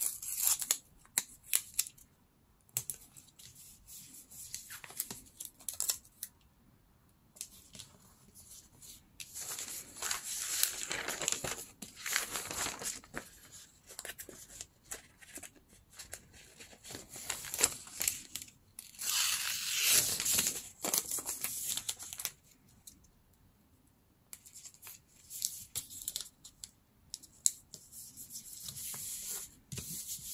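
Paper being torn and handled by hand: scattered crackles and rustles, with two longer tearing strokes, about ten and twenty seconds in.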